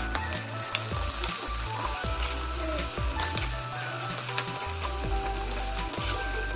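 Tomato wedges and green chillies sizzling in hot oil in an earthenware clay pot, with scattered sharp pops, while a spoon stirs them.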